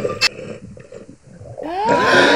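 Animal-like growling sound effect with a click just after the start and a rising, pitched cry near the end.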